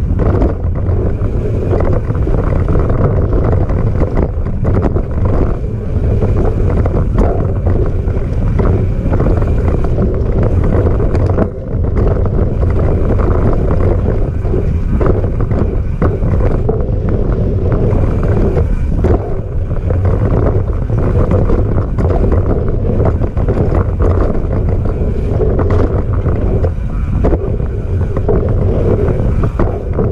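Wind rushing over the microphone of a camera on a moving mountain bike, mixed with tyre noise on a dirt singletrack and frequent small knocks and rattles as the bike rides over bumps.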